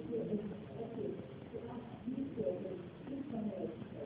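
A lecturer's voice talking on, muffled and thin, with little above the low and middle range.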